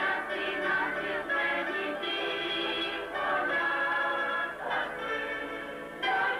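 Mixed choir singing in parts, accompanied by mandolins and guitars.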